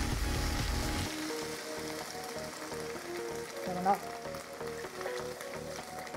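Beef stock poured from a metal jug into a hot frying pan of vegetables, the pan sizzling, louder for about the first second. A background music melody plays over it.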